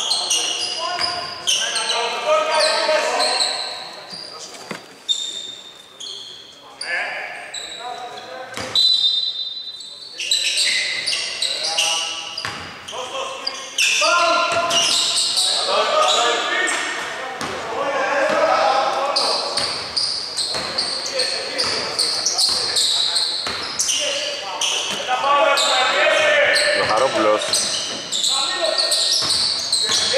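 A basketball bouncing repeatedly on a hardwood court during live play, echoing in a large hall, with voices talking and calling out over it.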